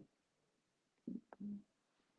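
Near silence, broken a little past a second in by two faint, short voice sounds with a small click between them: a man's hesitation murmur before he speaks.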